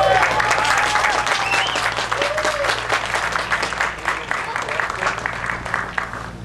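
People applauding, with a few voices calling out over the clapping in the first couple of seconds.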